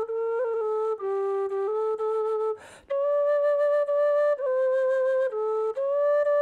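Frula, the Serbian wooden shepherd's flute, playing a slow solo melody of long held notes with quick ornaments between them, and a short break for breath about halfway through.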